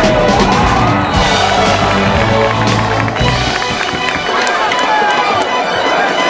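Music with sustained low bass notes that drop out a little past halfway, and a gliding melodic line above them.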